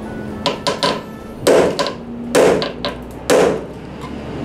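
Hammer striking a steel punch held on a broken bolt in rusty car body metal: a few light taps, then three heavy blows about a second apart.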